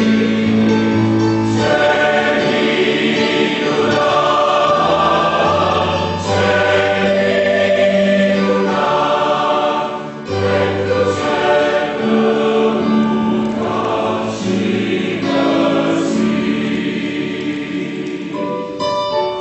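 Church choir singing a hymn in held chords, with a low bass part, phrase by phrase with brief pauses between phrases.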